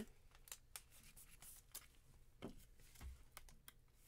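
Very faint scattered clicks and light scrapes of a trading card and a clear plastic card holder being handled, with a slightly louder click about two and a half seconds in.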